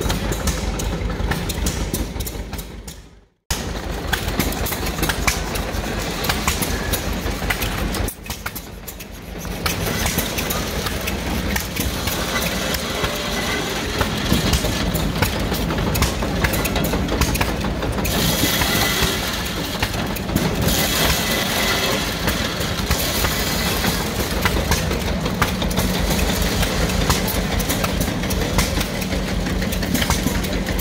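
Antique belt-driven corn sheller running off a hit-and-miss engine, a steady mechanical clatter and rattle as ears of corn are fed through it. The sound cuts out sharply for a moment about three seconds in.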